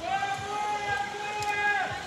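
Zipline trolley running along the steel cable overhead: one long, steady high whine that drops in pitch and dies away near the end.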